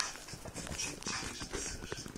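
A miniature pinscher growling in short, repeated rasping breaths.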